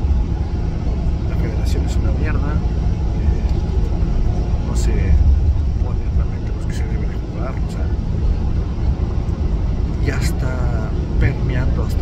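Steady low rumble of a moving bus's engine and tyres on the road, heard from inside the passenger cabin. A man's voice talks over it at times.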